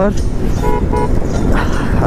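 Two short toots of a vehicle horn in quick succession, over the steady wind and engine rumble of a motorcycle riding at speed.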